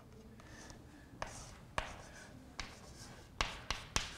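Chalk writing on a chalkboard: a faint scratching broken by several sharp taps as the chalk strikes the board.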